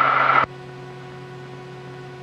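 Steady cabin noise of a Piper PA-46T Meridian's turboprop in flight. It cuts off abruptly about half a second in, leaving a faint steady hum with several held tones.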